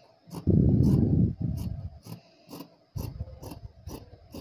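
Fabric scissors snipping through blouse cloth, about two crisp snips a second. Two loud, low, rough stretches of about a second each come in near the start and again near the end, louder than the snips.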